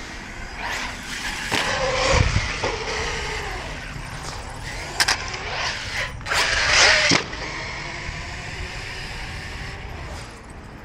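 Traxxas Sledge RC monster truck being driven hard on concrete: its brushless electric motor whines up and down with the throttle over the noise of its tyres. Two sharp knocks come about five and six seconds in as the truck leaves the ramp and hits the concrete, followed by a loud scrabbling burst of tyres and motor.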